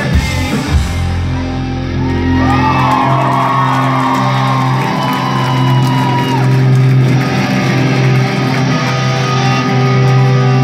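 A live rock band's electric guitars and bass hold a long ringing chord after the drum hits stop about a second in. Over it, a few high, gliding shouts come from the crowd.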